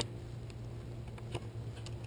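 A sharp click as a kiteboard fin is pressed against the board's underside to seat its screws in the holes. A faint tick follows over a low steady hum.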